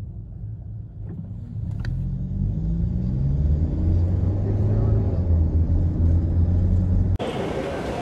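Car engine pulling away and accelerating, heard from inside the moving car: a low drone that rises in pitch and grows louder over the first few seconds, then holds steady. Near the end it cuts off abruptly to the busy noise of a crowded indoor space.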